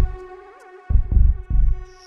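Live electronic music played on keyboard synthesizers: a held synth chord with a brief pitch bend, and deep bass thumps about a second in and again half a second later.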